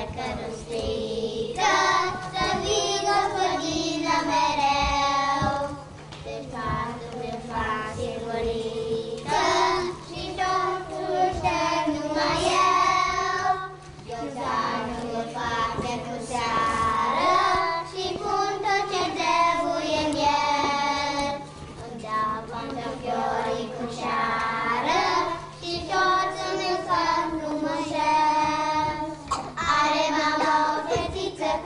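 A group of young children singing a song together, in phrases of a few seconds with short breaks between them.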